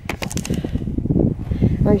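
Handling noise of a camera being set down on a dry-stone wall: a quick run of clicks and knocks as it meets the stone, then low scraping and rubbing as it is shifted into place.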